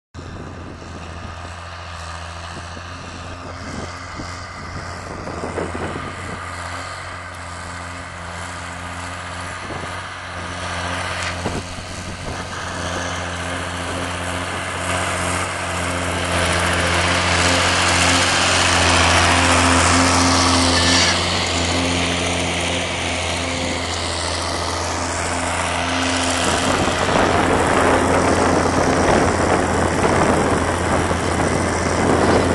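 Zetor Crystal 12045 tractor's six-cylinder diesel engine running steadily under load while pulling a disc harrow across ploughed ground. It grows louder as the tractor approaches and is loudest as it passes close by, about two-thirds of the way through.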